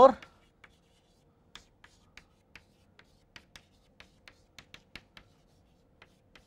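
Chalk on a chalkboard while words are written: a string of light, short taps and scratches, about three a second, stopping about a second before the end.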